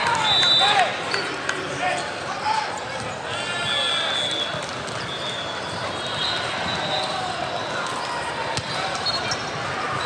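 Busy indoor volleyball tournament hall: volleyballs struck and bouncing on the hardwood courts, short high shoe squeaks, and players' voices calling, all echoing in the big hall. The loudest stretch is in the first second.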